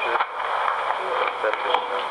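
Speech only: a person talking, the words unclear, over a thin, hissy, radio-like recording.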